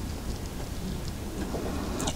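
Steady background noise: an even hiss with a low rumble underneath, without distinct knocks or clicks.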